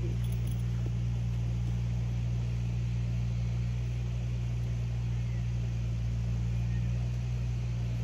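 A steady low hum with no change in level or pitch, over a faint background hiss.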